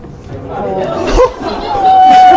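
Movie-theater audience chatter and voices, growing louder, ending in one loud drawn-out vocal cry.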